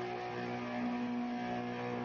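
Amplified electric guitars and bass holding a chord that rings on steadily through the amps, with amplifier hum under it.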